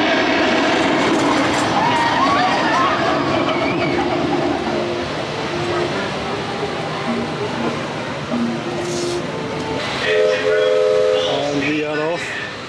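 A steam whistle sounds a chord of several steady tones for about a second and a half near the end, over a background of voices and a hissing, churning wash.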